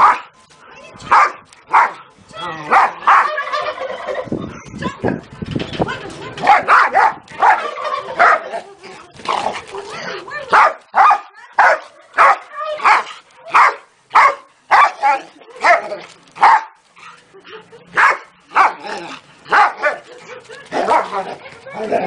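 A dog barking over and over in short, sharp barks, at times about two a second, while it faces off with a rooster.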